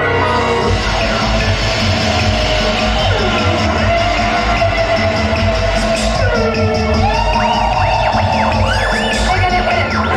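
Film soundtrack music with sound effects, played loudly over a theater's speakers, with a steady low rumble underneath. From about seven seconds in, several sweeping tones rise and fall in pitch.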